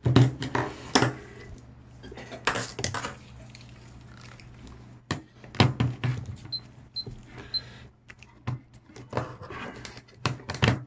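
Handling noises on a desk: a series of sharp knocks and clicks with rustling as a plastic-sheathed foil battery cell and a pocket multimeter are picked up, moved and set down, over a faint steady low hum.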